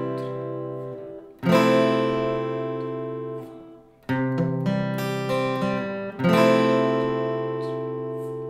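Acoustic guitar playing an intro chord progression. A chord is struck about a second and a half in and left to ring and fade, then a short picked arpeggio lick follows around the middle, then another chord is struck and rings out near the end.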